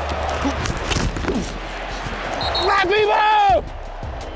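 Stadium crowd noise with scattered thuds of contact on the field, then near the end a man's loud drawn-out yell that rises and falls in pitch and cuts off suddenly.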